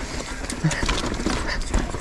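Mountain bike riding down a rough dirt trail: tyres crunching over dirt and rocks, with irregular knocks and rattles from the bike. Wind rumbles on the camera microphone.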